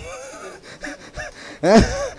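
A male preacher's voice through a microphone: a short quiet stretch with faint breathy voice sounds, then one loud spoken word near the end.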